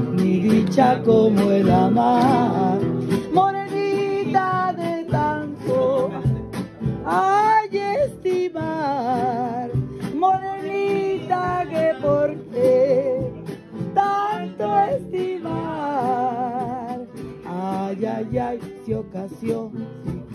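Live acoustic guitars strummed and plucked together, with a voice singing the melody in long held notes with vibrato.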